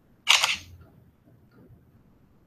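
Camera shutter sound of the PhotoDirector Android app as a photo is captured: a single short shutter click about a quarter second in.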